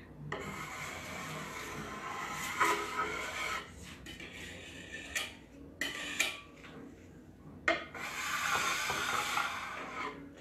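A broad metal spatula scraping softened varnish and paint stripper sludge across a wooden table top, in three long strokes with a few sharp clicks between them.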